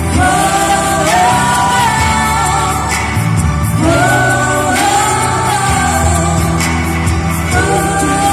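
Live pop song: a group of young women singing a melody to strummed acoustic guitars, amplified through a stage PA.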